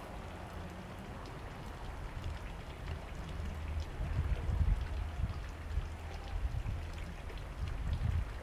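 Garden fountain splashing, a steady patter of falling water, under a low rumble that swells about four to five seconds in.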